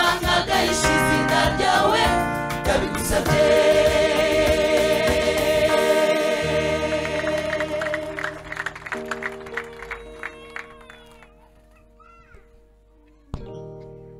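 Gospel choir singing with instrumental accompaniment, ending the song on a long held chord that fades away over several seconds. A sharp click comes near the end, followed by a quiet sustained chord.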